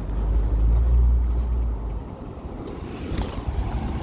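A small Chevrolet Type A school bus driving up close and pulling to a stop, its engine running with a low rumble that is loudest about a second in and then eases off. A thin, steady high whine runs over it for most of that time.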